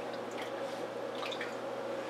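Water dripping and trickling in a partly drained aquarium, a few scattered faint drips over a steady hum.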